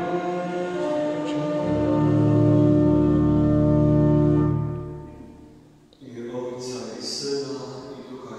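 Church organ holding the final chord of a hymn, its bass swelling in about two seconds in, then the chord dies away about five seconds in. A man's voice begins speaking near the end.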